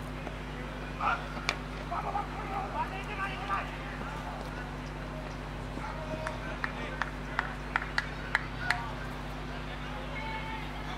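Distant voices of cricketers calling on the field, with one sharp crack about a second and a half in, typical of bat hitting ball, and a short run of hand claps from about six and a half to nine seconds in, over a steady low hum.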